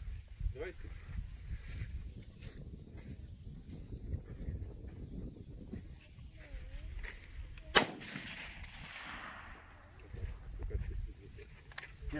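A single rifle shot about eight seconds in, its report rolling away for a couple of seconds after it, from a bolt-action rifle fired off a bench rest. A low wind rumble on the microphone runs underneath.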